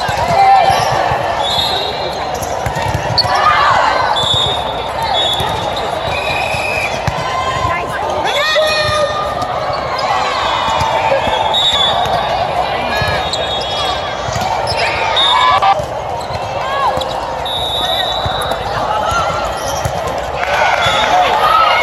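Volleyballs being hit and bouncing on an indoor court in a large reverberant hall, with players' shouts and background voices from around the courts.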